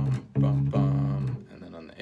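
Electric bass guitar playing three low, held notes of a soul bass line, the last ending a little past halfway, with the player scatting the notes along as "bom".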